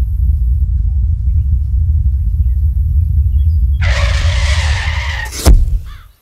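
Comic sound effect of a fast arrival: a loud, steady deep rumble, a skidding hiss about four seconds in, and a sharp thump near the end, after which it cuts off.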